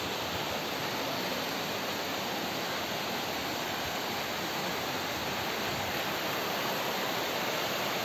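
Waterfall plunging into a pool and the shallow stream below it running over stones: a steady, unbroken rush of water.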